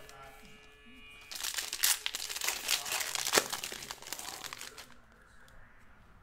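Foil trading-card pack being torn open and crinkled by hand: a dense crackling that starts about a second in and dies away near the end.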